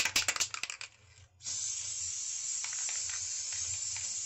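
Aerosol can of Gorilla Glue spray adhesive sprayed onto hair in one long, steady hiss that starts about a third of the way in. It is preceded by a few quick clicks of handling.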